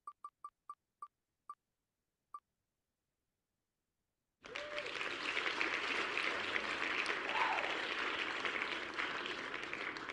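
Wheel of Names web app's spinning-wheel ticks, slowing to single clicks and stopping about two and a half seconds in as the wheel comes to rest. About four and a half seconds in, the site's applause sound effect for a winner starts and plays on.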